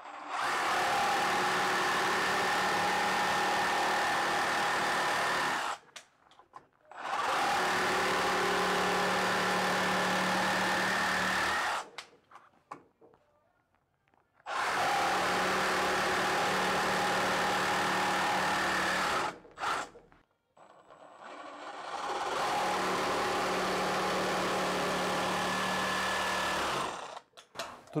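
Makita DJR187 18 V brushless cordless reciprocating saw cutting a 5×10 cm hardwood roof beam, which the owner takes for garapeira. The saw runs at a steady pitch in four runs of about five seconds each, with short silences between them.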